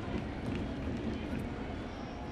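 Ballpark crowd ambience: a steady murmur of spectators' voices and stadium noise, with no distinct single event.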